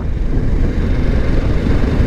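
Wind buffeting the microphone outdoors: a steady low rumble with a hiss above it.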